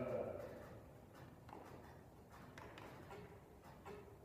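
A person's long drawn-out call trailing off in the first half second, then faint, irregular short taps.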